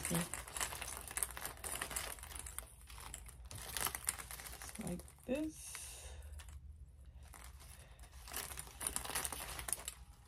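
Artificial berry garland being handled and bent into a ring: its little balls and wire stems rustle and click against each other in bursts.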